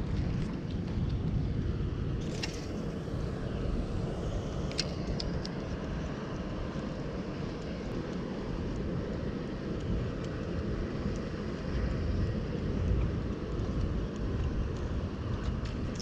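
Steady low rumble of wind on the microphone over open water, with a few faint clicks in the first several seconds.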